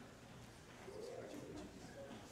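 Faint murmur of voices, with one soft vocal sound that rises and falls about a second in.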